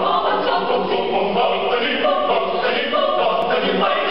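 Mixed choir of men's and women's voices singing a Filipino folk song arrangement a cappella, in several parts with sustained, shifting chords.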